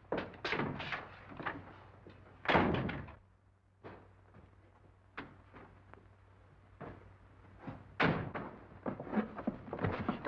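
A door shutting with a heavy thud about two and a half seconds in, after a few knocks and steps, then scattered faint footsteps and clicks, and a cluster of clunks near the end as someone climbs into a parked car. A low steady hum runs underneath.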